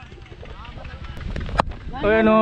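Low wind rumble on a helmet-mounted camera's microphone, with faint distant voices and a single sharp click about one and a half seconds in.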